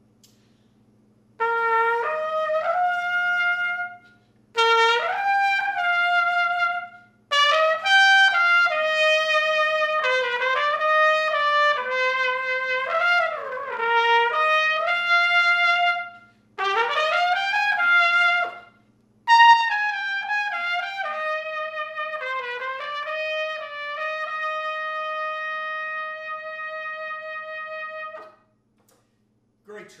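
1950 H. N. White King Silvertone B-flat trumpet with a sterling silver bell, played on a shallower-cup, tighter-backbore mouthpiece: a slow melody taken up an octave, in five phrases with short breaths between. The last phrase ends on a long held note that stops a little before the end.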